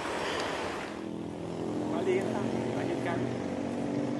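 A steady engine hum starts about a second in, after a short stretch of hissing noise, with a few brief higher sounds over it.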